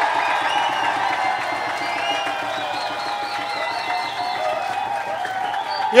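Comedy-club audience keeping up a steady crowd noise of many overlapping voices and whistles over a fast, drumroll-like patter, building suspense before a winner is named. A loud shout of "oh!" breaks in at the very end.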